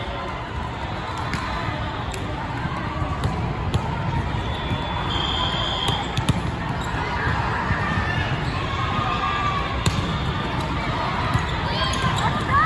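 Echoing sports-hall din of an indoor volleyball tournament: a steady background of crowd voices with scattered sharp thuds of volleyballs being hit and bouncing on the courts. A short, high, steady whistle tone sounds about five seconds in.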